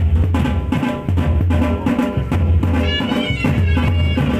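Traditional drum music: deep drums beating a steady rhythm under a pitched melody, with the melody rising about three seconds in.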